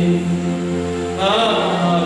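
Slow singing in long, steadily held notes, a man's voice through a microphone and loudspeaker, moving to a new note about a second in.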